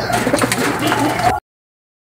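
A flock of domestic pigeons cooing together in a loft, which cuts off abruptly a little over halfway through, leaving silence.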